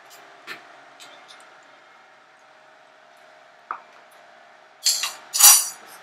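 Stainless steel cookware clinking over a faint steady hum: a light click a little under four seconds in, then two loud metal clanks near the end as the steel plate of steamed dhokla is handled out of the steamer and set on the stove.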